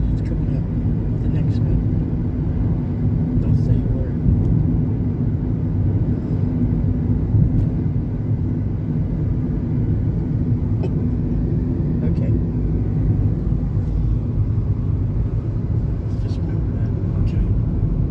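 Steady low rumble of a car's engine and tyres on the road, heard from inside the moving car, with a steady hum and a few faint clicks.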